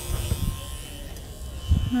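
Electric dog-grooming clippers fitted with a comb attachment running with a steady hum as they work through a Bichon's coat on the front leg. A few dull low bumps of handling come near the start and again near the end.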